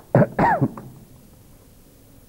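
A man clearing his throat into a close microphone: two short, loud coughing bursts in quick succession near the start, then quiet room tone.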